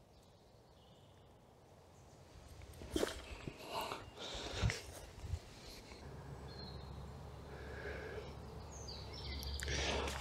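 Quiet woodland ambience with a few soft rustles and handling clicks about three to five seconds in, made by a person handling plants and a camera, and a low rumble that builds toward the end.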